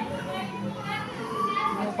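Several voices talking in the background, children's voices among them, with no one voice standing out.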